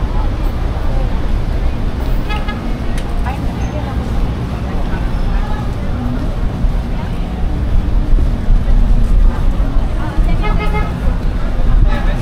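Busy outdoor market street ambience: background voices of shoppers and vendors over a steady low traffic rumble, with two short pitched sounds standing out, one about two seconds in and one near the end.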